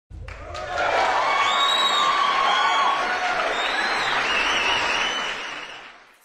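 Large crowd applauding and cheering, with a few high cries rising above the noise. It swells up within the first second and fades out near the end.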